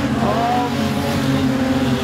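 Street stock race cars' engines running at speed around a dirt speedway oval, a steady engine note from the pack of sedans.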